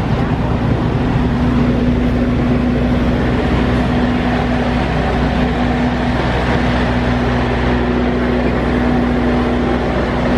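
Diesel passenger train standing at a station platform with its engine running: a steady hum over a broad, even rushing noise.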